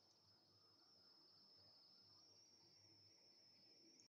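Near silence: faint room tone with a thin, steady high-pitched whine, and a faint click at the very end.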